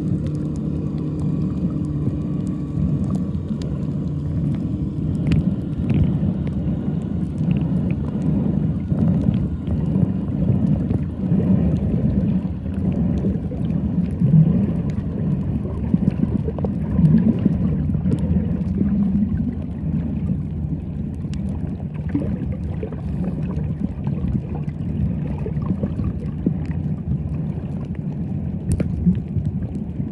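Muffled underwater noise picked up by a submerged camera: a steady low rumble of moving water with scattered faint clicks and crackles.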